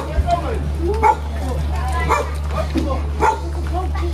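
A dog yipping and whining in short calls that rise and fall in pitch, mixed with people talking, over a steady low hum.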